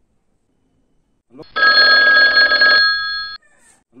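Mobile phone ringing loudly: a single burst of ringing starting about a second and a half in, lasting about two seconds, then cut off abruptly as the call is answered.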